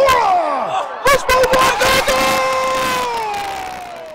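Stadium crowd cheering and yelling as a cross comes in, led by one long, loud shout that slowly falls in pitch and fades. Sharp claps sound over it in the first couple of seconds.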